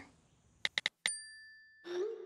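Smartphone sounds: three quick keyboard taps, then a bright message-sent chime that rings and fades over most of a second. Just before the end a low sustained tone begins.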